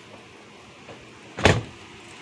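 A single short thump about one and a half seconds in, over low steady outdoor background noise.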